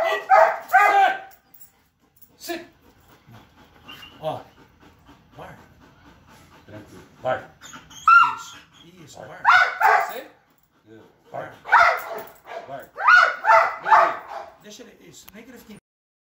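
Belgian Malinois barking in several bouts of short, loud barks: one right at the start, one around eight to ten seconds in, and one around twelve to fourteen seconds in. Fainter whimpers and yips come in between.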